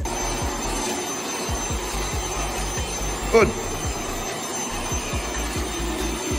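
Panasonic canister vacuum cleaner running steadily, a rushing motor noise with a thin high whine, over background music with a thudding bass beat.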